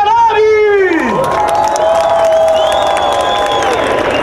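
Jet aircraft of a formation team flying past, their engine pitch falling steeply in the first second, followed by a crowd cheering.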